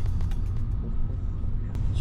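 A car on the move, heard from inside the cabin: a steady low rumble of engine and road noise, with a faint click near the end.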